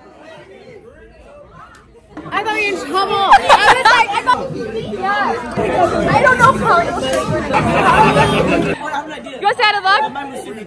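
Chatter of several people talking over one another. It starts about two seconds in and eases near the end.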